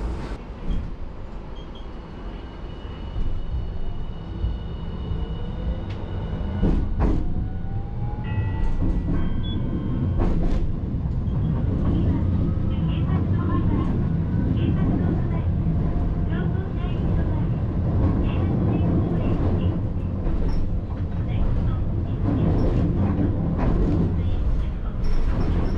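Hiroshima Electric Railway streetcar pulling away and running: a whine rising steadily in pitch as it speeds up, with a couple of sharp knocks, then a louder steady rumble of the car running on its rails.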